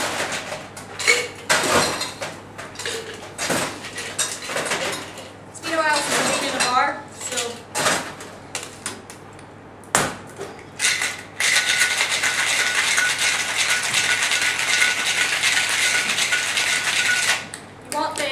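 Clinks and knocks of bar tools and glass for the first several seconds, then, about eleven seconds in, a cocktail shaker shaken hard, its ice rattling steadily for about six seconds before it stops abruptly. The hard shake breaks up the basil leaves in the drink.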